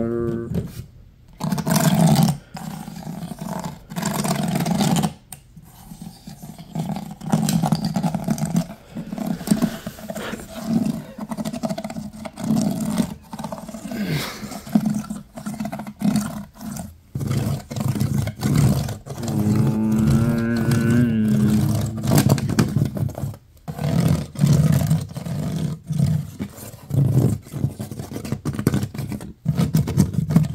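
Fingers tapping and scratching, first on a one-gallon plastic water jug, then across the ridged grooves of a fluted wooden cabinet panel: a dense run of taps and rasping scrapes, with a brief buzzing tone about two-thirds of the way through.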